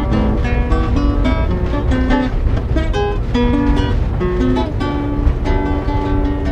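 Acoustic guitar playing an instrumental passage between sung verses: a plucked melody of single notes over chords. A steady low rumble, the running noise of the moving train carriage, lies underneath.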